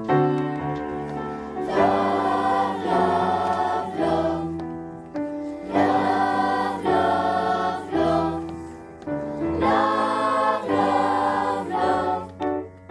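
Children's choir singing with piano accompaniment. The voices come in about two seconds in and sing in phrases roughly every four seconds over the piano.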